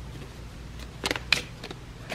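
A deck of round tarot cards being shuffled by hand: a few sharp card clicks and taps, the clearest two about a second in, a quarter second apart.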